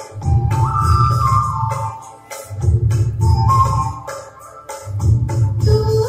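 Devotional music with an organ-like keyboard playing held melody notes that step up and down, over heavy bass swells about every two and a half seconds.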